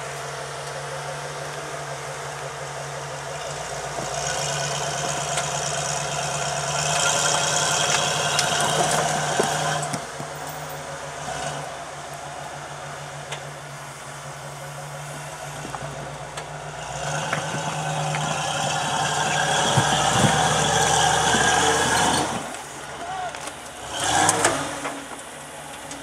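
Rock crawler buggy's engine running steadily at low revs, pulling harder in two long throttle stretches, about four seconds in and again about seventeen seconds in, with a short burst near the end, as it climbs a near-vertical rock ledge under load.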